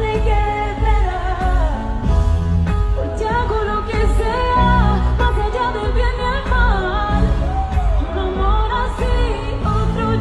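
Live pop song with a woman singing a wavering melody over grand piano chords, bass and a steady beat.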